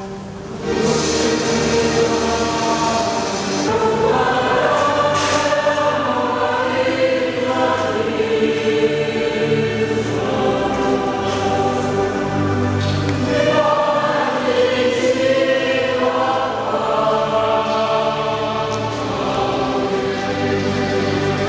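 A choir singing a church song with several voices in harmony, getting louder just under a second in and carrying on steadily.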